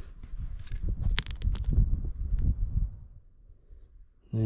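Handling noise as a broken rock is turned over in the hand close to the camera: irregular rustling and rubbing with a few light clicks, dying away about three seconds in.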